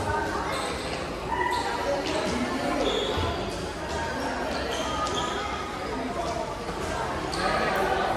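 Busy youth volleyball practice in a reverberant gym: many children's voices shouting and chattering at once, over repeated thuds on the hard court floor.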